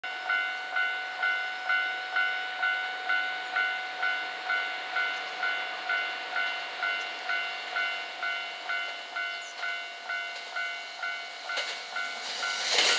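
Railway level crossing warning bell ringing steadily, a little over two dings a second, signalling an approaching train. Near the end the running noise of the approaching 227-series electric train begins to rise.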